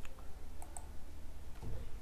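A few faint, short clicks and a soft low thump near the end, over a steady low hum.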